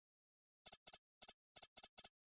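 Animation sound effect of high-pitched electronic chirps: six quick double chirps, a few tenths of a second apart, starting about two-thirds of a second in, going with on-screen text being typed out.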